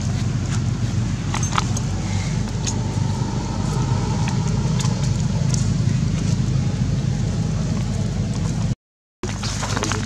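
A steady low engine hum runs throughout, with scattered faint clicks over it, and the sound cuts out completely for a moment near the end.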